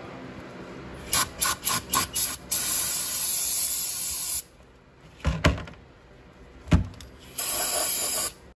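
Aerosol brake cleaner spraying into a brake caliper: several short bursts, then a steady spray of about two seconds. Two sharp knocks follow, and a second spray starts near the end.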